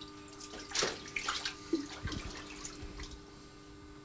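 Water splashing and dripping in a koi holding tank as a koi is held at the surface and let go, with short splashes in the first two seconds and a dull thump about two seconds in, over a steady low hum.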